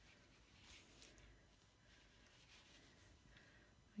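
Near silence: faint soft rustling of yarn and knitted fabric being handled as a gathering thread is drawn through with a needle, a little more noticeable about a second in.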